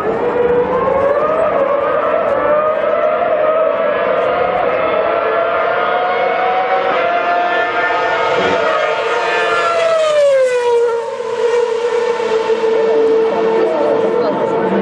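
A Red Bull Racing Formula 1 car's 2.4-litre V8 engine screaming at high revs. Its pitch climbs over the first several seconds, drops sharply about ten seconds in, then holds a steady high note.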